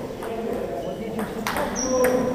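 Table tennis balls clicking off bats and tables in a few irregular strokes, the loudest about one and a half seconds in, over people talking in the background.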